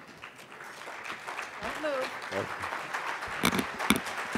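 Audience applause building steadily louder into a standing ovation, with a few sharp knocks near the end as the podium microphone is handled.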